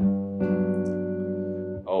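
Electric guitar arpeggio: a couple of notes picked in quick succession, then left ringing together as a sustained chord with a wavering pulse in it. The guitar is out of tune.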